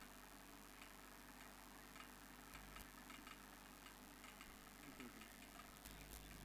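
Near silence: a faint background hiss with a few scattered faint clicks.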